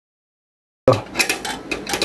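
Dead silence, then a little under a second in the sound cuts in with a sharp click followed by a quick run of metallic clicks and scrapes: a screwdriver working against the metal switch contact inside an opened rice cooker, lifting it so that it touches the thermostat switch again.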